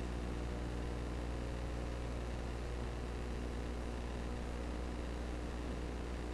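Steady low electrical hum with a layer of hiss, unchanging throughout; no splashing, animal calls or other distinct sounds stand out.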